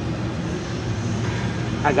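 Steady low mechanical hum with no distinct events, and a man's voice starting near the end.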